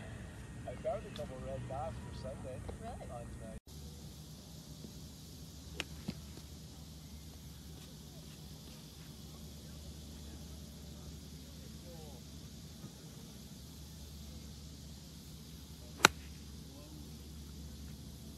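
A golf iron striking the ball off turf: one sharp, loud crack about sixteen seconds in, over faint steady outdoor background. A voice talks faintly in the first few seconds.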